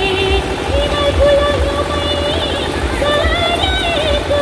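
Loud live stage music through a PA system: a melody of held notes moving in steps, over a heavy pulsing bass.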